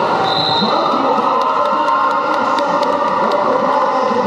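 Quad roller skates rolling and clattering on a wooden sports-hall floor as a pack of skaters jostles, mixed with crowd voices. Through the middle comes a run of sharp clicks.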